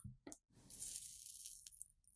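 Flux and solder sizzling as a hot soldering iron tip melts solder onto a circuit-board pad, joining a power-cable wire: a soft hiss that starts about half a second in and lasts about a second, after a few faint clicks.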